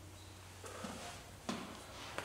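Quiet gym room tone with a low steady hum, faint rustling of movement and a single soft click about one and a half seconds in, as a rubber resistance band is let go.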